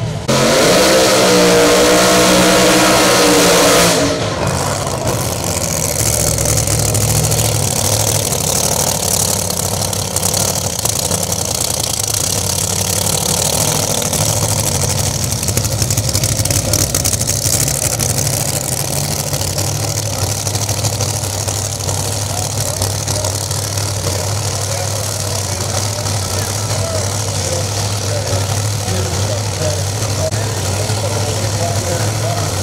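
A Pro Mod drag car running at full throttle down the strip, loud, cut off abruptly about four seconds in. Then a Pro Mod drag car's engine idles with a steady low drone as the car rolls up to the starting line.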